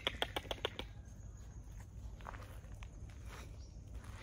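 Footsteps on a gravel and dirt track: a quick run of short crunches in the first second, then only faint scattered ticks.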